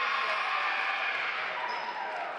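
Players' and spectators' voices echoing in a gymnasium during a volleyball match.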